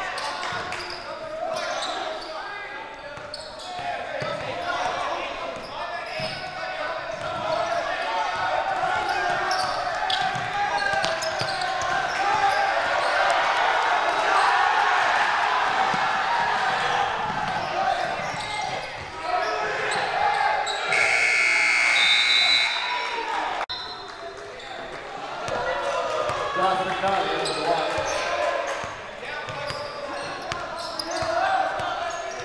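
Basketball bouncing on a hardwood gym floor amid indistinct crowd and bench voices echoing in the hall. About two-thirds of the way through, a shrill blast sounds for about a second and a half.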